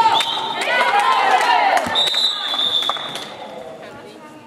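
Indoor handball play: sneakers squeaking on the hall floor and the ball thudding, then a referee's whistle blows once for about a second, roughly halfway through, and play stops.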